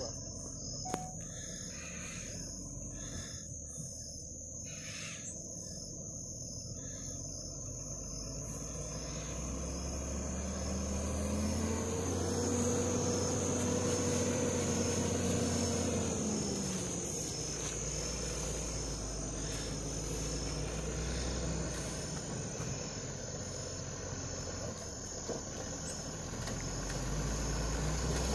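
Distant diesel engine of a heavy vehicle labouring through deep mud, its hum swelling about ten seconds in and easing off some seven seconds later, then running on faintly. A steady high insect buzz carries on underneath throughout.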